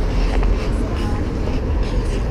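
A steady low rumble of city street noise, with a few faint ticks.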